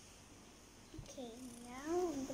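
A soft tap about a second in, then a young child humming a wordless tune, rising and falling in pitch.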